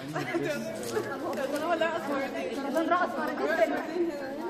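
Several people talking at once, their voices overlapping into a chatter that no single speaker stands out from.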